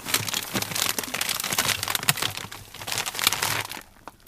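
Plastic bag of whole-leaf hops crinkling and crackling as it is handled and pulled out from among other packages in a freezer, dying down just before the end.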